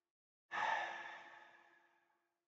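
A man's breathy sigh, starting suddenly about half a second in and fading away over about a second.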